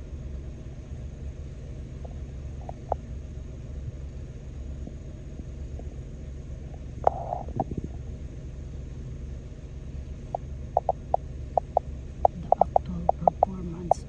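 Steady low rumble of a large multirotor agricultural spraying drone hovering over a rice paddy some distance off. One short call about halfway through, then in the last few seconds a quick run of short, sharp calls, several a second.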